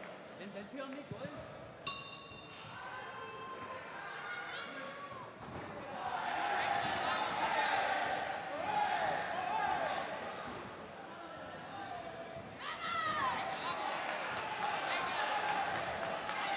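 Kickboxing ring in a large echoing hall: a ringing tone about two seconds in, like the round bell, then shouting from the corners and the crowd, with scattered thuds of blows and footwork.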